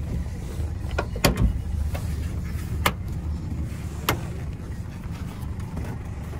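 Four sharp clicks of the rear door latch and handle as the back door of a 1993 Toyota Land Cruiser Prado is worked open from inside, over a steady low rumble.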